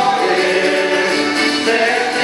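Chilean cueca music with several voices singing together over the instrumental accompaniment.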